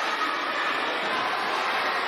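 Steady hubbub of a large crowd of children talking at once, with no single voice standing out.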